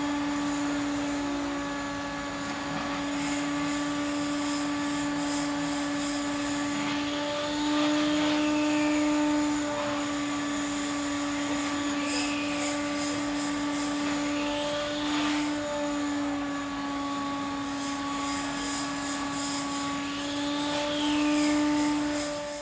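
A fly buzzing steadily, a droning hum that wavers slightly in pitch and swells louder about eight seconds in and again near the end.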